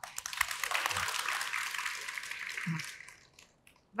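Studio audience applauding, tapering off and fading out about three seconds in.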